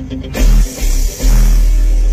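Music with deep bass played through a car audio system driving two EMF Audio Banhammer 12-inch subwoofers, heard inside the car's cabin. Two short bass hits, then a long held bass note from a little over a second in.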